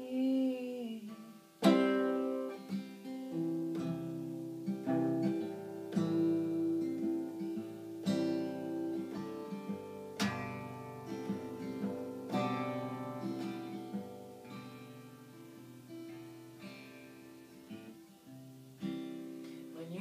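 Acoustic guitar played solo in an instrumental break: chords strummed and picked, left to ring, with two hard strums standing out, one about two seconds in and another about ten seconds in.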